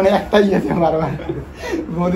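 Speech only: a person talking, with a chuckle.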